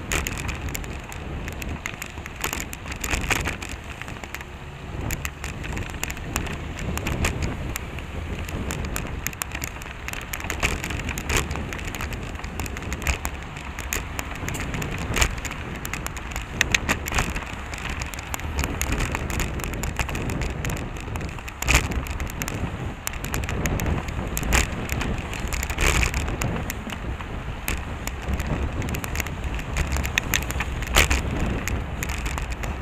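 Riding noise picked up by a bicycle-mounted camera: wind rushing on the microphone and a constant crackle of small rattles and knocks from the ride, with car traffic alongside.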